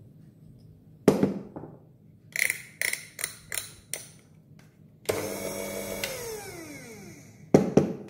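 Electric coffee grinder: a sharp knock, then about six quick taps on the grinder and its metal dosing cup, then the burr motor runs for about a second and winds down with a falling whine. Another sharp knock comes near the end.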